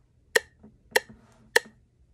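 Google's web metronome clicking through a phone speaker at 100 beats per minute: three sharp, even clicks about 0.6 seconds apart.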